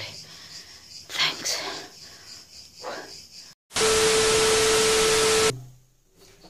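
Faint short vocal sounds from a woman, then about three and a half seconds in, after a moment of dead silence, a sudden burst of static-like hiss with a steady tone through it that lasts nearly two seconds and cuts off abruptly: an edited-in static sound effect.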